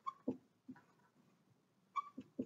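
Dry-erase marker writing on a whiteboard, faint: a brief high squeak as a stroke starts, a couple of short soft strokes, and another squeak at the end.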